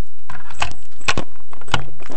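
Rattling and clicking of small hard objects being handled, with several sharp knocks about a second in and again near the end, as in packing up during a break.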